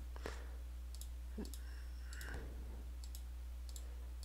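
Computer mouse clicking faintly several times at irregular moments, over a steady low hum.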